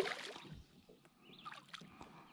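A brief splash on the water surface where the fishing lure sits, fading away within about half a second into soft lapping water.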